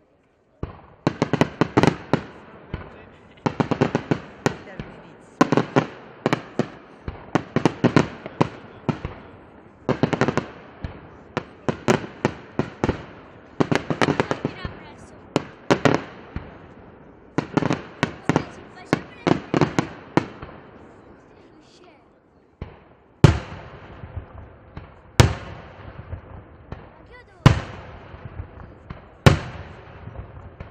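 Daytime fireworks: aerial shells bursting overhead in rapid clusters of sharp bangs and crackles for about twenty seconds. After a short lull, single loud bangs come about every two seconds.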